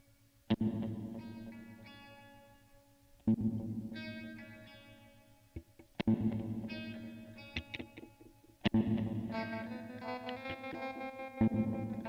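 Guitar music with chorus and distortion effects: a chord struck about every three seconds and left to fade, with picked notes over it that grow busier near the end.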